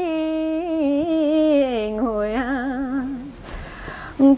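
Unaccompanied solo voice singing a Mường folk song in long held notes with a wavering vibrato, the melody stepping downward; it breaks off about three seconds in.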